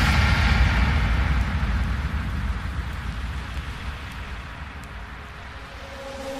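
Electronic dance music with the beat cut out, leaving a wash of noise and reverb tail over a low rumble that fades steadily for about six seconds: a breakdown or transition in a DJ mix.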